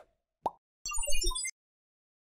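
Animated-logo sound effect: two short pops, then a brief jingle of quick chiming notes stepping down in pitch over a low rumble. It cuts off about one and a half seconds in.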